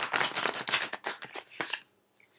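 Oracle card deck shuffled by hand: a quick run of soft card flicks and slaps for about a second and a half, stopping near the end.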